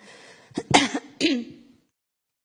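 A woman coughing a few short times into a handheld microphone, the loudest cough about three-quarters of a second in, then the sound cuts out suddenly to dead silence.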